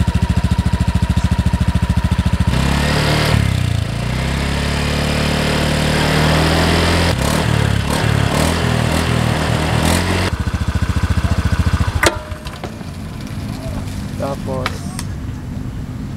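Honda Beat 110 FI scooter's 108cc single-cylinder, air-cooled four-stroke engine idling through its exhaust, then revved with rising pitch for several seconds before dropping back. About twelve seconds in there is a click, followed by a quieter running sound.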